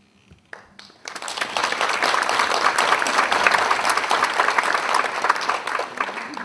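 Audience applauding: many hands clapping, starting about a second in and easing off near the end.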